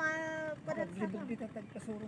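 A long, steady, high-pitched vocal call lasting about half a second, followed by indistinct talking.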